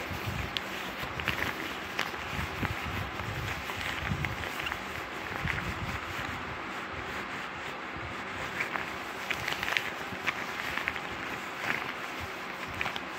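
A soft fabric item handled and rubbed close to a phone microphone: a steady rustling and scratching with many small irregular clicks.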